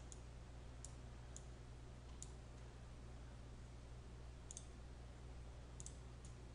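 Faint computer mouse clicks, about six of them at irregular intervals, made while selecting and dragging shapes in editing software.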